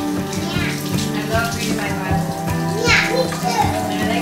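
Background music over a kitchen faucet running into the sink, with a young child talking.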